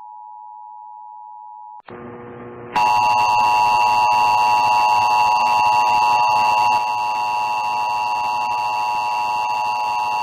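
Emergency Alert System two-tone attention signal, a steady electronic tone. A quieter tone cuts off about two seconds in, and after a brief burst of noise a second, much louder and harsher attention tone starts over a background hiss and holds for about eight seconds. It marks the start of a broadcast EAS required weekly test.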